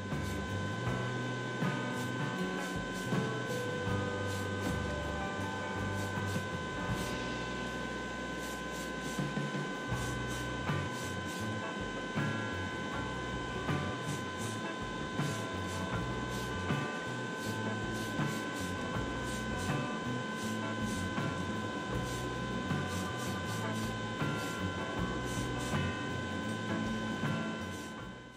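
Aerosol can of grey primer spraying, a steady hiss, mixed with the constant hum and whine of a spray booth's extraction fan, under background music.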